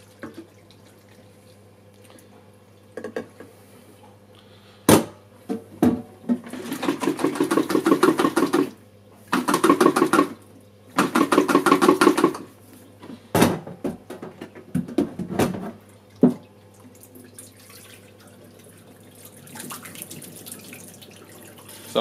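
Warm rinse water sloshing and rattling inside a plastic Lomo film developing tank as it is shaken in three bursts with short pauses, along with a few sharp knocks of the tank against the steel sink. Near the end the water runs faintly out of the tank into the sink.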